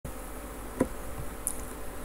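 Steady low electrical buzz and hiss of background recording noise, with a single sharp click about 0.8 seconds in.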